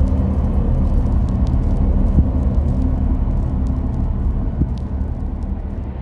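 A loud, steady low rumble with a droning hum.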